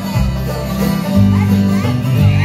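Live bluegrass band playing an instrumental break: upright bass notes walking underneath, with guitar, mandolin and fiddle on top.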